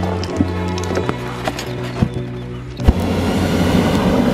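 Background music with a steady beat. About three seconds in, a hot air balloon's propane burner fires over it for a second and a half or so, a loud rushing blast.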